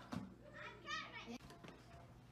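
A child's voice, faint and brief, about a second in, with a few light knocks and clicks around it.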